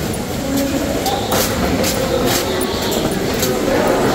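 Footsteps of a group on cave stairs, irregular short knocks about every half second to second, over a steady background of people's murmuring voices.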